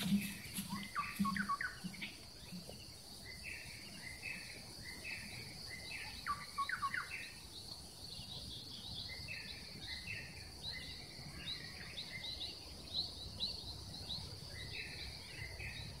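Birds calling over a steady, high-pitched insect drone: short call phrases repeat throughout, a quick run of falling notes comes about a second in and again about six seconds in, and a rapid series of short chirps follows in the second half.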